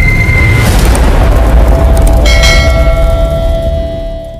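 Logo-intro sound effect: a loud, deep boom with a heavy rumble, then a bell-like chime struck a bit over two seconds in that rings on while the sound fades out near the end.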